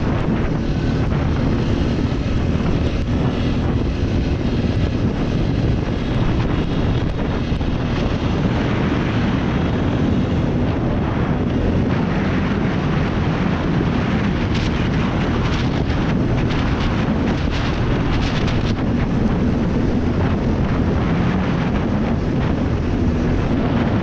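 ATV engine running steadily while the quad is ridden along a dirt trail, with wind buffeting the microphone. A few seconds of sharper clatter come a little past halfway.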